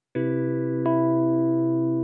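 Music: a sustained chord of steady tones starts just after the speech stops, a second note struck in about a second later, the chord then slowly fading.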